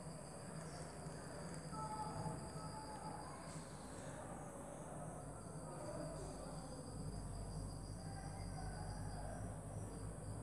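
Crickets trilling steadily in the background, a high-pitched trill that drops out briefly and resumes, with a low hum coming up about six seconds in.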